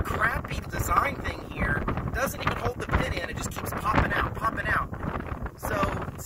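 Strong wind buffeting the microphone: a heavy, gusting low rumble that largely drowns out a man's voice.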